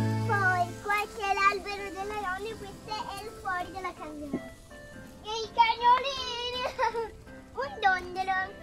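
A young girl talking, with background music that cuts out about a second in.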